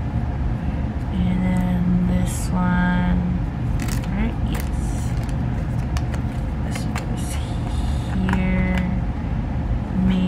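Photocards being slid in and out of clear plastic binder sleeves by hand, with light plastic rustles and clicks over a steady low rumble. A voice hums three short held notes.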